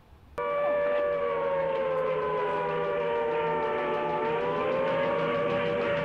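An air-raid siren starts suddenly about half a second in. Its wail sinks slowly in pitch, then winds back up again near the end.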